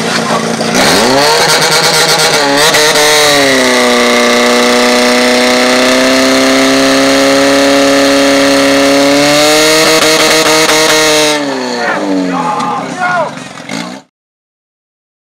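Portable fire pump's engine revving hard about a second in and holding a high, steady pitch at full throttle while it pumps water out to the hoses, with a brief waver early on as the lines load. It drops back near the end and stops about eleven seconds in, followed by a few shouted voices.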